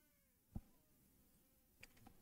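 Near silence between commentary, with one faint short low knock about half a second in.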